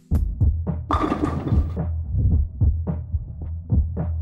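Glass marbles rolling and knocking on a cardboard mini bowling alley: a low steady rumble with irregular taps, and a short clatter about a second in.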